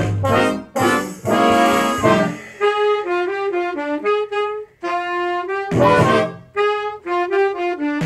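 A small jazz band of saxophones, trumpets, trombones, flute, electric guitar, upright bass and piano playing together. About two and a half seconds in, the full-band chords give way to a single melodic line over lighter accompaniment.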